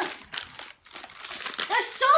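Shiny plastic toy wrapper packets crinkling as they are handled, in two spells with a short pause about halfway through.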